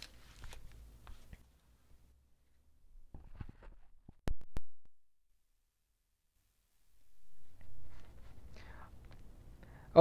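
Two sharp clicks a fraction of a second apart, after some faint rustling: the short/long zoom switch on an Azden SGM-990 shotgun microphone being flipped, picked up by the microphone itself. Faint low room rumble around it, with about two seconds of dead silence after the clicks.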